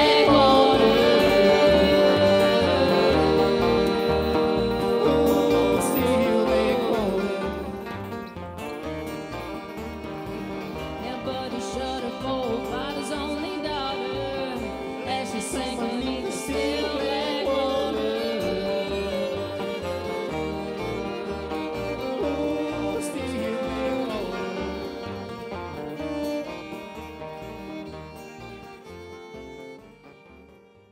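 A bluegrass-based Americana band plays live on acoustic guitar, upright bass, banjo and fiddle. About seven seconds in the music drops to a quieter passage, which fades out near the end.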